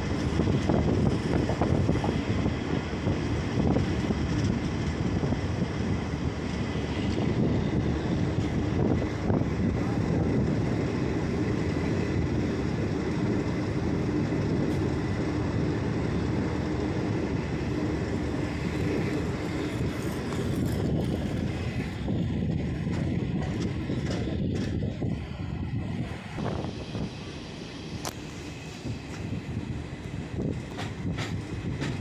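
Garib Rath Express passenger train running at speed, heard close beside the coach: a steady rumble of wheels on rail mixed with rushing air. The noise eases somewhat near the end.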